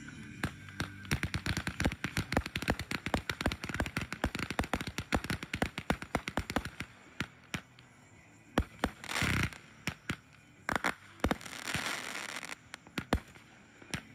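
Consumer aerial fireworks going off. A fast string of sharp cracks, several a second, runs for the first seven seconds or so. It is followed by a few louder single bursts and a rough, noisy stretch of about a second.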